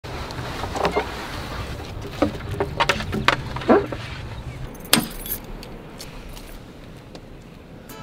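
Scattered clinks, knocks and rattles of gear being handled at an open van, over a low rumble that fades out about halfway through. The knocks come irregularly, with the sharpest ones about three and five seconds in.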